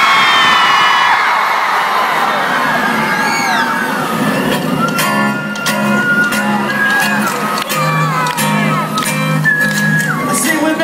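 A concert crowd screams and cheers, then about halfway through a live rock band starts a song's intro: a steady drum beat and a repeating bass line, with the cheering carrying on under it.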